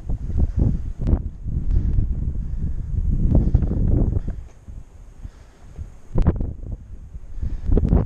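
Wind buffeting the microphone in gusts, a low rumble that eases off for a couple of seconds past the middle. There is a brief knock about six seconds in.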